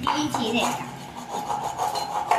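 A dry piece of coconut shell being rubbed and scraped by hand, a rasping in short, irregular strokes.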